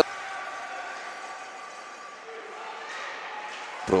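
Ice rink ambience during play: a steady hall murmur that opens with one sharp click.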